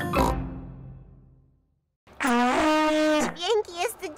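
A cartoon theme tune ends on a final chord with a pig's snort, ringing away over about a second and a half. After a short silence comes a single buzzy held note about a second long, blown on a broken tuba, followed by a voice.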